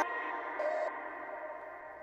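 Electronic chillstep loops playing from the Launchpad app, thinned down to sustained, echoing tones without drums and fading steadily quieter, with one short higher note about half a second in.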